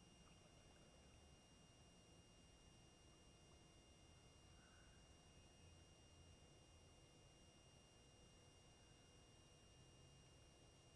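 Near silence: a faint, steady background hiss with a low rumble.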